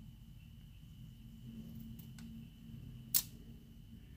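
Small scissors cutting a paper flower sticker: a couple of faint snips about two seconds in and one sharper click just after three seconds, over a low steady hum.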